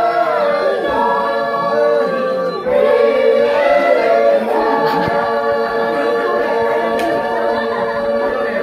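A group of people singing together unaccompanied, holding long notes in several voices and moving between them every second or two.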